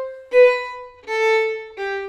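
Solo violin playing a descending sequence of long bowed notes, each starting strongly and fading away. The strong starts come from a lot of bow speed at the start of each longer note, which gives the sequence its springy feel.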